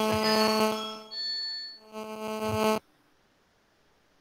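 A steady electronic buzzing hum made of several held tones, with a brief high whine joining partway through; it cuts off abruptly just under three seconds in.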